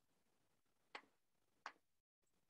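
Two short, sharp clicks of a computer mouse, about 0.7 s apart, over near silence.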